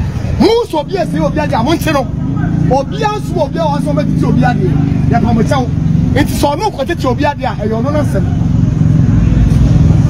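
Men's voices talking over the steady low hum of a running motor vehicle engine. The engine hum grows louder near the end as the talking fades.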